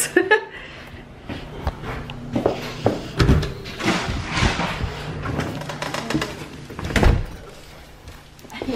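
Doors opening and shutting and footsteps as someone walks through a house into the garage, with a loud thump about seven seconds in.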